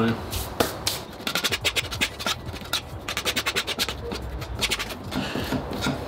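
Putty knife scraping and mixing a paste of sawdust and wood glue on a plywood board, a quick run of short scrapes from about one to three seconds in, then slower, fainter ones.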